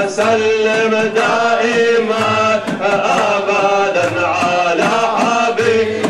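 Men's voices chanting salawat, devotional blessings on the Prophet, in long melodic lines over a regular beat.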